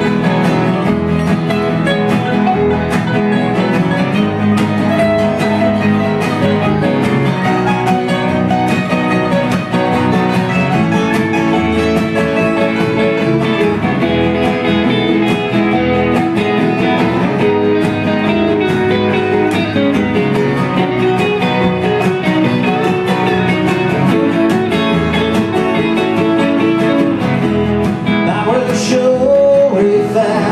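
Live Americana string band playing an instrumental break: electric guitar, acoustic guitar, mandolin and upright bass together at a steady tempo, with no vocals.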